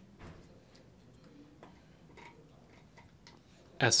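A quiet pause in a large room with a few faint, scattered ticks and clicks, then a man's voice resumes near the end.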